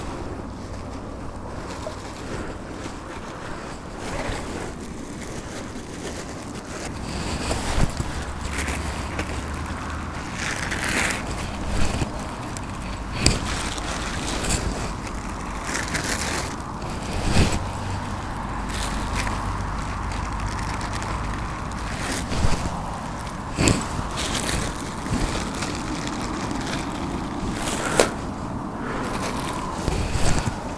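Wind buffeting the microphone, with a rushing wash of river water behind it. A plastic bag rustles now and then, and there are about half a dozen sharp knocks, the loudest about 17 seconds in and about 23 seconds in.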